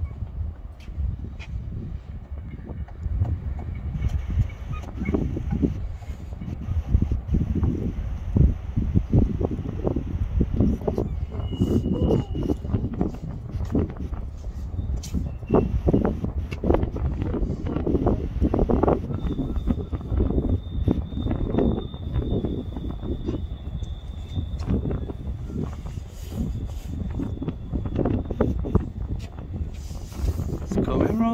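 Footsteps on the wooden boards of a timber footbridge, with wind rumbling on the microphone. A faint, thin, steady high tone comes in about two-thirds of the way through and holds.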